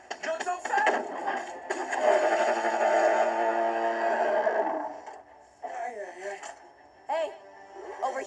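A long, loud beast roar sound effect lasting about three seconds, starting a little under two seconds in and fading out, with short snatches of speech from the film soundtrack before and after it.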